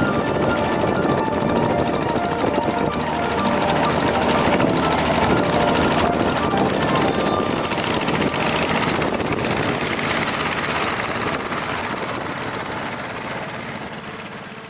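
Walking tractor's single-cylinder diesel engine chugging with a fast knocking beat as it drags a leveling board through paddy mud, with music playing over it. The sound fades near the end.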